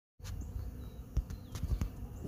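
Honeybees buzzing around a pollen feeder over a low rumble, with a sharp tap about a second in and another near the end.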